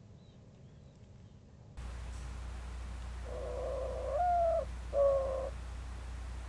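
Mourning dove cooing: a long low note that lifts in pitch near its end, then a short break and a shorter second note. It is the parent's coo announcing feeding time to the squabs.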